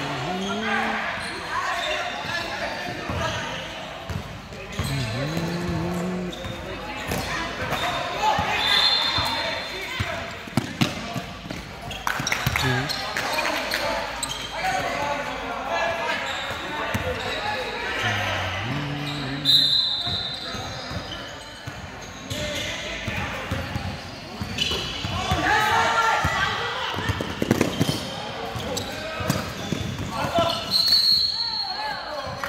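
Basketball bouncing on a hardwood gym floor during play, with short high sneaker squeaks a few times and players and spectators calling out, all echoing in a large gym.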